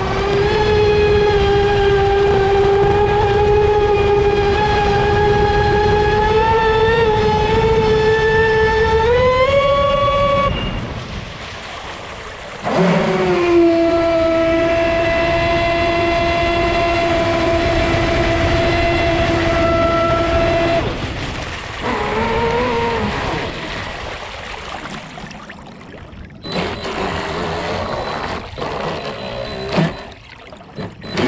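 Leopard 4082 2000kv brushless motor in an RC speedboat's Dominator hull, heard from on board: a loud, steady high whine at speed with water rushing under the hull. The pitch rises about ten seconds in, the whine cuts out for about two seconds, returns at a steady lower pitch, cuts again about twenty seconds in with one brief blip of throttle, then the boat coasts in with water splashing against the hull.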